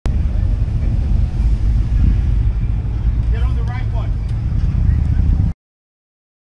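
A vehicle engine idling with a low, steady rumble. A person's voice is heard briefly a little past halfway, and all sound cuts off abruptly near the end.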